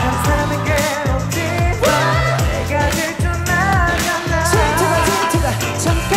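K-pop song from a stage performance: a male lead vocal, sung with vibrato into a handheld microphone, over a pop backing track with a driving beat and bass notes that slide downward.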